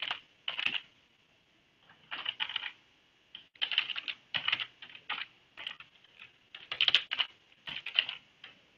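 Typing on a computer keyboard: rapid keystroke clicks in short bursts with brief pauses between them as a web address is entered.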